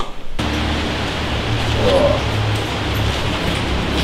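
Steady hiss with a low hum underneath, starting abruptly about half a second in, with faint voices in it.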